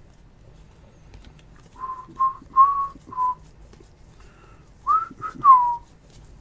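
A person whistling a short tune: four brief notes at about the same pitch, then after a pause three more near the end that slide upward, the last one gliding down.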